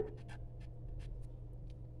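Pen writing on a sheet of paper clipped to a clipboard: a series of short, faint scratching strokes as a page number is written.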